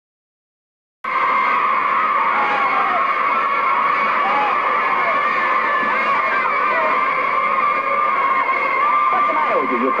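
A crowd of children shouting and yelling all at once: a dense, steady din that starts suddenly about a second in. It sounds thin, like an old film soundtrack.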